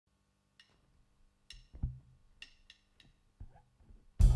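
Faint clicks tapped on a drum kit, evenly spaced about a second apart, with a few softer taps between them and one low thump: a drummer's count-in.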